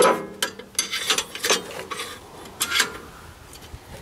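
Steel hinge rod of a John Deere 2720 tractor's seat bracket being worked loose and handled: a sharp metallic clink that rings briefly at the start, then a run of scrapes and clicks of metal on metal.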